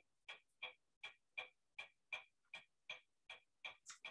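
Faint, evenly paced clicking, about three clicks a second, sharp and light with no other sound between the clicks.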